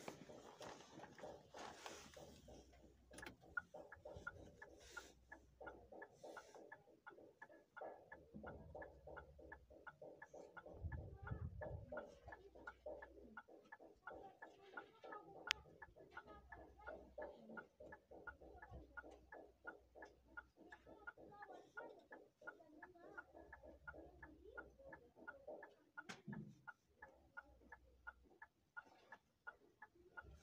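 Near silence with a faint, even ticking a few times a second, plus a low rumble about eleven seconds in and one sharp click near the middle.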